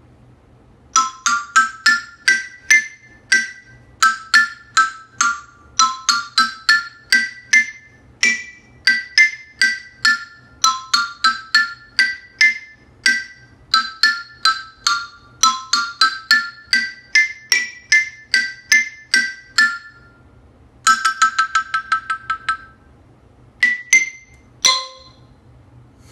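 Stagg 37-key xylophone played one-handed with mallets: a quick melody of separate struck notes, its short phrases repeated. Near the end a fast roll on a single note, then a couple of lone strikes, the last on the lowest bar.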